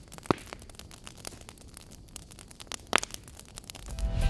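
Burning lithium-polymer (LiPo) battery pack crackling and popping with irregular clicks, two sharper pops standing out about a third of a second in and near three seconds in.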